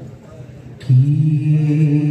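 A man's voice opening a kirtan chant: about a second in it starts one long held note, steady in pitch, rising sharply out of a low crowd murmur.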